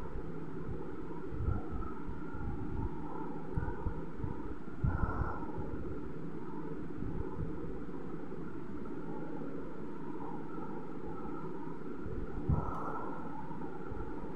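Steady low background rumble, with a few soft bumps scattered through it, one near the end.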